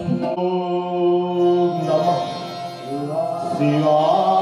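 Live Hindu devotional music: a chant-like melody sung in long held notes, with drum strokes that stop just after the start.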